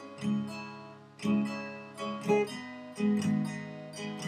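Acoustic guitar strummed, one chord about every second, each left to ring and fade before the next.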